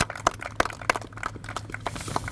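Applause from a small group of people: sparse, uneven hand claps that thin out near the end.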